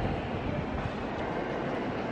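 Steady background ambience of a large stone cathedral interior, picked up by a camera microphone: an even rumble and murmur with no distinct events.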